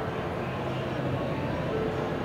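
Steady background hum of a large exhibition hall, with faint distant music and a few faint held notes.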